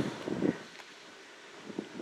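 Faint wind noise on the microphone outdoors, with a couple of soft ticks.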